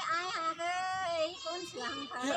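A voice singing an unaccompanied Thái folk song in the Tai language, holding drawn-out notes that slide between pitches, with short breaks between phrases.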